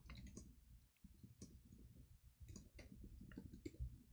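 Faint typing on a computer keyboard: quick runs of key clicks, a short pause about a second in, then steadier typing.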